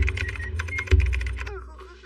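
A cartoon sound effect: a rapid run of clicks over a low rumble, fading away in the second half.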